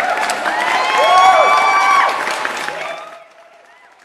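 Crowd cheering and applauding, with many voices whooping over a spatter of claps, fading away about three seconds in.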